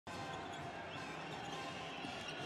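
Basketball arena sound during live play: a steady crowd hubbub with faint music in the hall.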